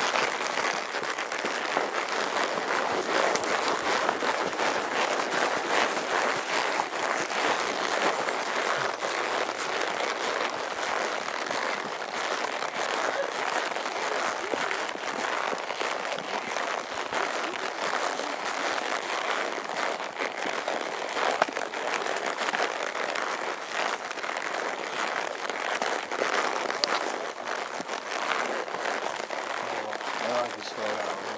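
Continuous rustling and crackling of pine boughs and brush scraping past the rider and camera on a narrow overgrown trail.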